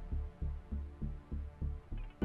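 Low, pulsing heartbeat-like beat in a drama's background score, about three throbs a second, under a faint sustained tone.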